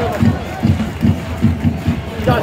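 Football supporters' drums beating a steady rhythm, about two beats a second, with the stadium crowd chanting along.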